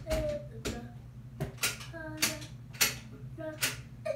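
Irregular sharp clicks and knocks, about eight in four seconds, from buckling straps and handling the padded bath transfer bench.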